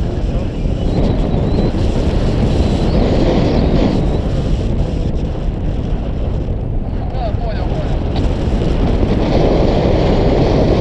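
Wind buffeting an action camera's microphone: loud, steady, low-pitched rushing noise from the airflow.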